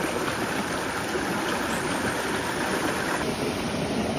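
Shallow mountain river rushing over rocks, a steady rush of water that thins a little about three seconds in.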